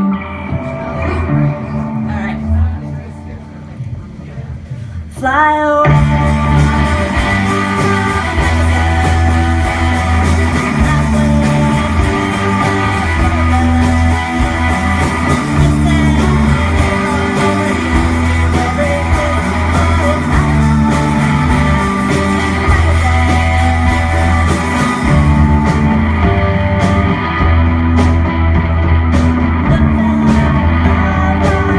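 A rock band playing live on electric bass and electric guitar: a sparse, quieter opening, then the full song kicks in loudly about five seconds in with a driving bass line.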